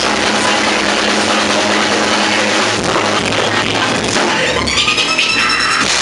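Yamaha drum kit with Sabian cymbals played hard in a driving rock groove, together with a loud recorded rock track.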